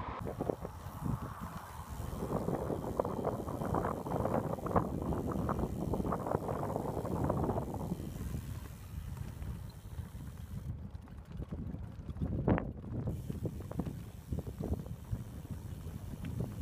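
Wind buffeting the microphone of a camera on a moving touring bicycle: a gusty, fluttering rumble that eases after about eight seconds.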